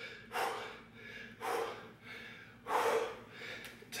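A man breathing hard with exertion through a set of dumbbell clean and presses: four forceful breaths, a little over a second apart.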